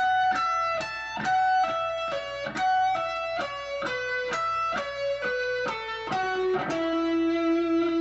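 Electric guitar playing a solo line at slow tempo: picked single notes, about three a second, in a repeating descending sequence, ending on a long held note about two-thirds of the way in.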